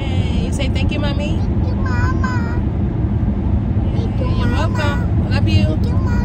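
Steady road and engine rumble inside a moving car's cabin, with short bursts of a young child's high voice about two seconds in and again around four to five seconds in.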